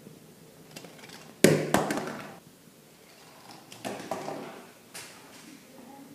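Small 3D-printed cart running down a craft-stick roller coaster track. A sudden loud clatter about one and a half seconds in rattles on for about a second, then a softer rattle comes near four seconds and a click near five.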